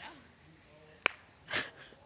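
A single sharp knock about a second in, a croquet mallet tapping a ball, then a brief breathy rustle, over faint insect chirping.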